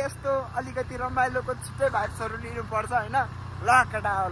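A man's voice calling out and vocalizing without clear words, over the steady low hum of a motorbike being ridden.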